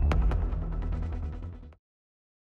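End-screen music with a heavy bass and a fast ticking beat, fading down and cutting off abruptly near the end.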